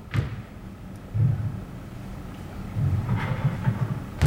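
A sharp smack right at the start as a thrown bouncy rubber ball strikes in a catcher's wall-rebound drill, followed by low dull thuds.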